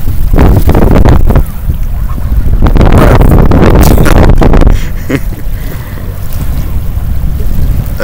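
Wind blowing straight across the microphone in strong gusts: a loud, rumbling noise that surges twice, then eases for the last few seconds.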